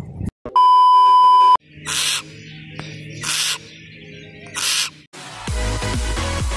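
Edited intro sound effects: a loud, steady, single-pitch electronic beep lasting about a second, then three short bursts of hiss over a faint low hum. Near the end, electronic dance music starts.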